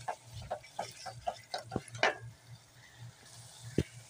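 Spoon stirring thick mutton karahi masala in a metal pot, knocking and scraping against the pot several times a second for about two seconds, then quieter, with one sharp knock near the end.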